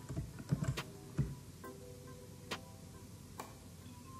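A few scattered sharp clicks from a computer mouse being used to rotate a shape, over quiet room noise.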